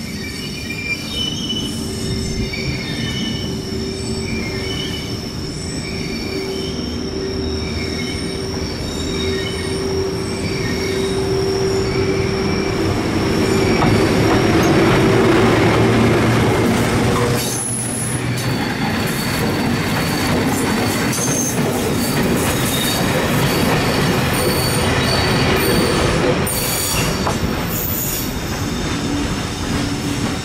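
JR Freight EF81 electric locomotive hauling a freight train, approaching and passing close by, growing loud toward the middle, with rumbling and rattling wheels on the rail joints and high wheel squeal from the wagons. Crickets chirp at first until the train drowns them out.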